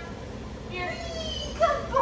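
A dog whining in high, sliding cries, with a sudden louder cry near the end.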